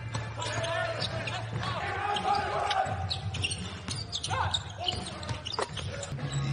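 Live basketball game on a hardwood court: a ball bouncing repeatedly, with players and coaches shouting on court in the first half.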